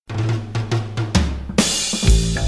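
Drum kit opening an early-1980s punk rock song after a moment of silence: a run of drum hits over a low held bass note, with cymbals crashing in about one and a half seconds in.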